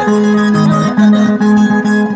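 Several acoustic guitars playing an instrumental Andean pumpin tune together, plucked melody over steady chords.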